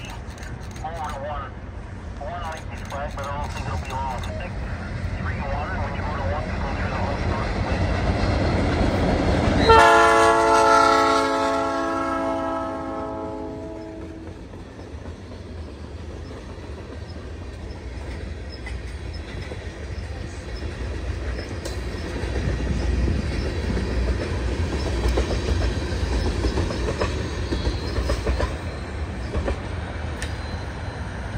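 A CN GP38-2W locomotive sounds one long P3 horn salute about ten seconds in, a chord lasting about four seconds, as its EMD diesel comes close and passes. Afterwards the train's cars rumble and clack by on the rails.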